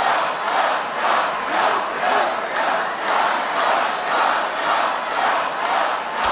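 A large crowd chanting in a steady rhythm, about two beats a second, with sharp accents in time with the chant.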